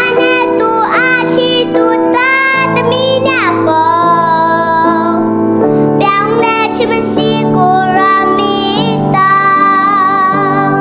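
A young girl singing through a headset microphone while accompanying herself on a Yamaha MX88 keyboard, holding long notes with vibrato over sustained chords that change every second or so.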